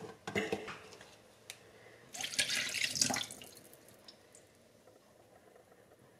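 Kitchen counter work: a couple of light knocks, then about a second of a hissing, splashing rush, like a short pour of liquid, fading to near quiet.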